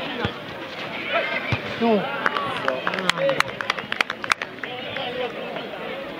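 Players shouting and calling to each other across an outdoor football pitch, with a quick run of sharp clicks from about two to four and a half seconds in.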